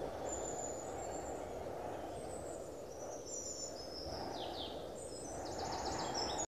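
Small birds chirping in short, high calls over a steady low rush of outdoor background noise, the calls busier in the second half.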